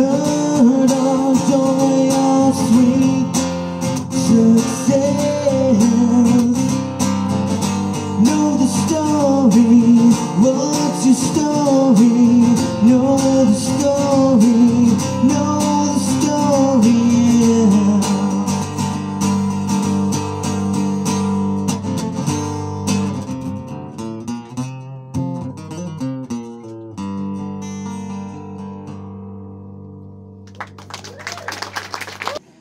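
Acoustic guitar with a man's voice singing a held, bending melody over it for the first half or so; after that the guitar plays on alone, its strums growing sparse and fading as the song ends near the close.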